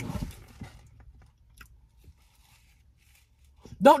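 A brief, faint rustle of take-out food trays being raised and handled, then a quiet car cabin with a single faint click; a voice starts right at the end.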